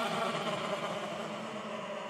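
The final chord of a rock song on distorted electric guitar, left ringing after the last hit and slowly fading out.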